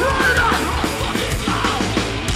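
Live hardcore punk band playing loud: distorted electric guitars and drums, with a yelled vocal line near the start.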